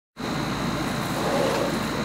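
Steady background noise, a low hum with hiss and a faint constant high tone, starting a fraction of a second in and holding level.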